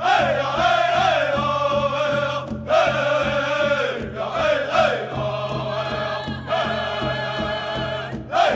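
Oklahoma pow-wow drum group: several singers chanting together in high voices in rising and falling phrases over a steady beat on a large drum.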